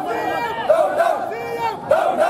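A group of men shouting protest slogans together, several loud voices overlapping with long drawn-out shouted syllables.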